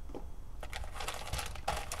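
Light crinkling and rustling of bags being handled, with scattered small clicks through the second half.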